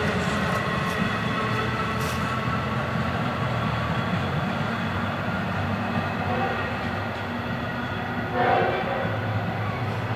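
EMD DE-30AC diesel-electric locomotive running at the far end of a receding four-car LIRR push-pull train, with a train horn sounding in the distance. The sound stays steady, with a short louder sound about eight and a half seconds in.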